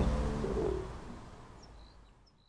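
Outdoor street ambience with a low rumble fading out, and a few faint bird chirps near the end.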